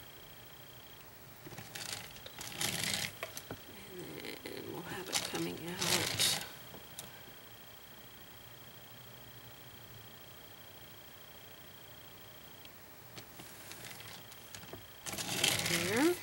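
Brief rustling, scraping bursts of handling at the work table, twice in the first few seconds and again near the end, as the wooden plate is turned on its textured mat; quiet in between.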